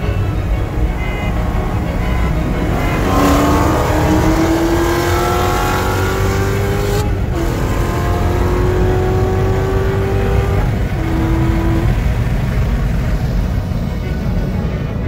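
Chevrolet Corvette C7 Z06's supercharged 6.2 L V8 accelerating hard under full throttle, heard inside the cabin. The engine note climbs through the revs, with quick upshifts about seven seconds in and again near eleven seconds, each one dropping the pitch before it rises again.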